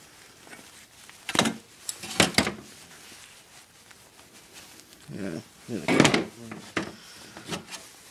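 Hand snips cutting and popping copper tubing off an air-handler's copper radiator coil: sharp metallic snaps and clanks, one about a second in, a pair just after two seconds, and a few more near the end.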